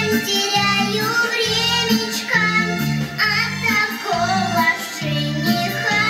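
A young girl singing a cheerful children's song over backing music with a bouncing bass line.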